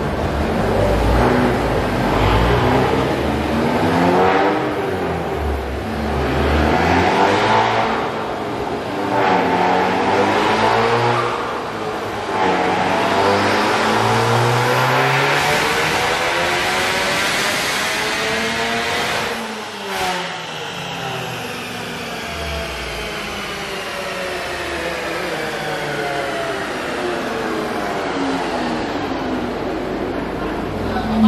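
2018 Honda Civic Type R's turbocharged 2.0-litre four-cylinder, breathing through a PRL downpipe and front pipe, making a full-throttle chassis-dyno pull. The revs rise and fall through several gear changes, then climb steadily for about eight seconds. The throttle is cut sharply about twenty seconds in, and the engine note falls slowly as the car coasts down on the rollers.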